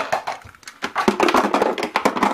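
Plastic toy blocks clattering against a plastic block wagon in a quick run of knocks and clicks.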